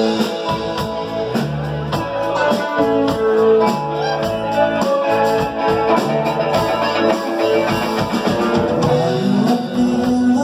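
Live rock band playing an instrumental passage: electric guitars and keyboard over a steady drum beat.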